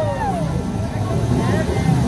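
A held sung note through a street-performance microphone and loudspeaker slides down and ends within the first half second, then crowd chatter over a steady low rumble.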